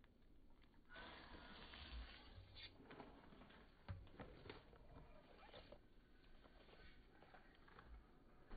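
Near silence with faint rustling and light clicks of hands handling a plastic bottle. There is one soft knock about four seconds in.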